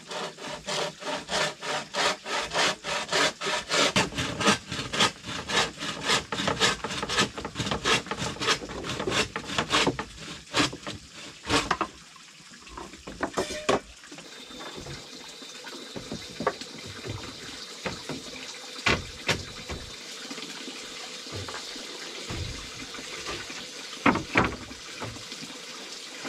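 Hand frame saw cutting a wooden board in steady back-and-forth strokes, about three a second, stopping after about ten seconds. A few scattered knocks of wood follow over a steady hiss.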